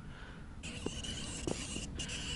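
Small reel of a winter ice-fishing rod being worked by hand, giving a quiet steady rubbing hiss from about half a second in, with a couple of faint clicks.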